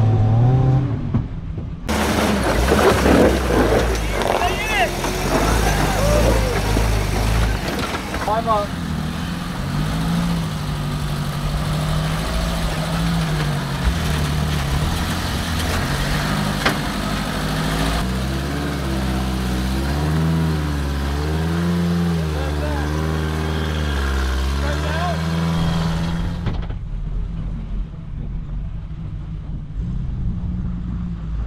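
Suzuki Samurai engine revving up and down as the rig crawls over boulders, with the revs rising and falling in quick repeated blips during the second half.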